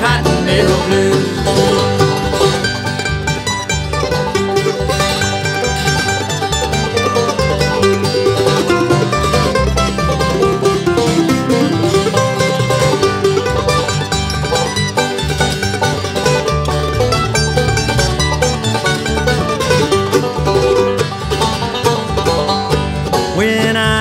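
Bluegrass band playing an instrumental break with a steady beat: banjo over acoustic guitar, mandolin and upright bass.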